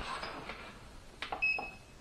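Digital readout (DRO) keypad being pressed: a few sharp button clicks, then one short high beep about a second and a half in, as the readout switches from millimetres to inches.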